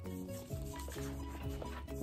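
Background music, held notes over a low bass line.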